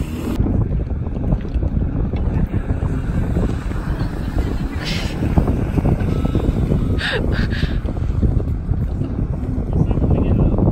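Gusty wind buffeting the phone's microphone, with a jet ski's engine running out on the water.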